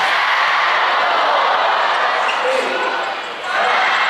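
Volleyball rally in an indoor arena: the ball is struck by hands over a steady, loud crowd din that dips briefly a little after three seconds.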